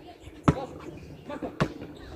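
A basketball bounced twice on a hard outdoor court, the two bounces about a second apart, the first the louder.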